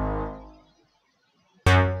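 Synth bass preset in LMMS sounding single pitched notes. A held note fades out in the first half second, and after a short silence a sharp new note starts near the end and quickly dies away.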